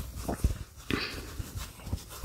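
Hands squeezing and pressing a stuffed plush crochet piece: soft, irregular rustling and brushing of bulky yarn and polyester stuffing, with a few soft low knocks.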